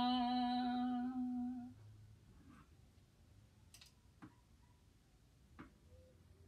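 A woman's unaccompanied voice holds the last note of a hymn on one steady pitch and stops about a second and a half in. After that there are only a few faint clicks.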